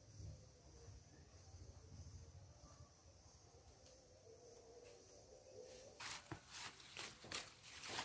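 Near silence: faint outdoor background. About six seconds in, a run of soft, short rustles and clicks begins.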